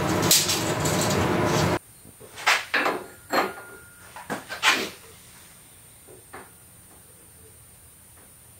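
A steady loud noise that stops abruptly a little under two seconds in, then a handful of short knocks and clunks of steel tubing being handled and set against a steel mini bike frame.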